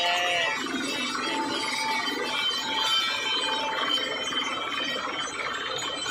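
Truck-mounted borewell drilling rig running while it drills with compressed air: a steady, dense mechanical din with short metallic ringing tones on top.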